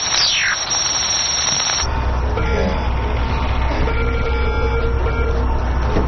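Dramatic film soundtrack. It opens with about two seconds of hiss and a falling whistle-like sweep, then a steady low rumble sets in under faint held tones.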